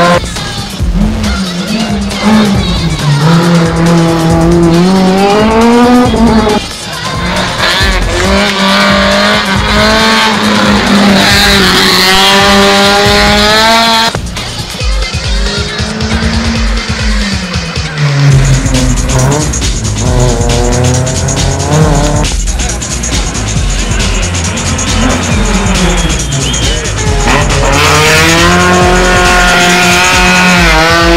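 Rally cars racing up a tarmac hill-climb, their engines revved hard and climbing and dropping in pitch again and again through gear changes as each car passes, with tyre squeal in the corners.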